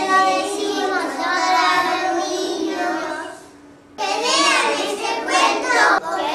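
A group of young children singing together in unison; the singing stops briefly a little past halfway and starts again suddenly about four seconds in.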